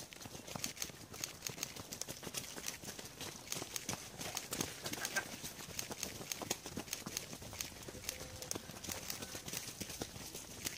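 Footfalls of many runners passing close by on a dirt trail: a dense, irregular patter of steps, several a second, with no steady rhythm.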